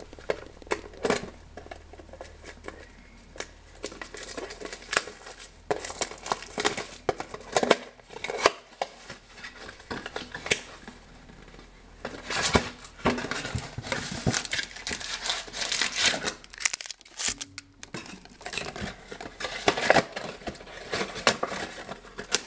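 Plastic wrapping crinkling and tearing as a trading card box is unwrapped and opened, with foil card packs handled and set down on a hard table: irregular rustling and sharp clicks, busier in the second half.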